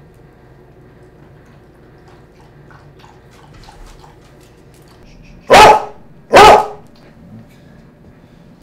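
American Eskimo dog giving two sharp, loud barks less than a second apart, about two-thirds of the way in. The dog is begging at the table for food.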